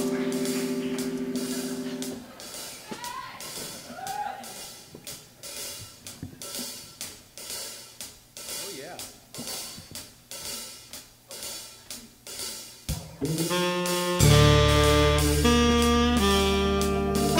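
A live band holds a chord that cuts off about two seconds in. The drummer then keeps a steady beat on hi-hat and cymbal alone, and about fourteen seconds in the full band comes in loud with saxophones and brass.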